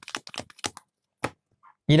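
A deck of Mysterium character cards being shuffled by hand: a quick run of short card clicks that stops just under a second in, followed by a single tap a moment later.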